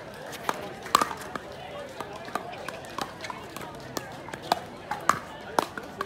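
Pickleball paddles hitting the plastic ball in a rally: a series of sharp, hollow pops at uneven gaps of about half a second to a second and a half. Voices murmur in the background.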